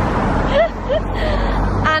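Road traffic passing close by: a steady rush of engine and tyre noise with a deep low rumble.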